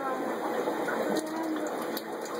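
Aquarium water gurgling steadily, with fish smacking at the surface as they take food.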